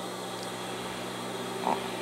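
Steady electric hum of a Siruba 737 industrial overlock machine's motor running while the machine is not stitching.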